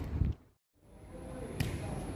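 The sound cuts out briefly, then steady outdoor background noise returns with a faint high steady tone. A single sharp knock comes about a second and a half in.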